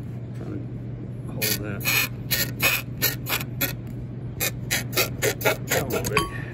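Metal hand tool working a threaded fitting out of an aluminium TPI fuel rail block: a quick run of metallic clicks, about four a second, starting about a second and a half in with a short break near the middle, over a steady low hum.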